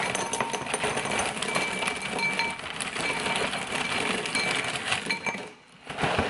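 Pillow-shaped filled cereal pouring from a foil bag into a ceramic bowl: a steady clattering rattle of pieces hitting the bowl and each other. It stops about five seconds in.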